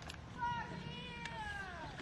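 An animal's single long call, starting about half a second in and sliding slowly down in pitch for more than a second.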